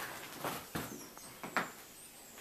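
Footsteps scuffing and knocking on a gritty, debris-strewn floor: about five irregular soft knocks in two seconds.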